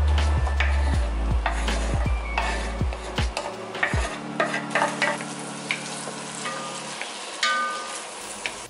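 Wooden spoon scraping and knocking repeatedly against an enamelled Dutch oven as diced red onion is stirred, the onion sizzling as it sautés in the pot.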